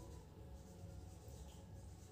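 Faint sound of a marker pen writing on a whiteboard, over a low room hum.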